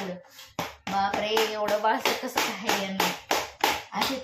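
A woman talking, with several sharp taps among her words.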